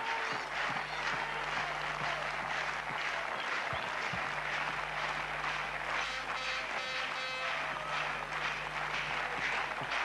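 Stadium crowd clapping together in a steady rhythm, the rhythmic handclap that urges on a javelin thrower as he readies his run-up.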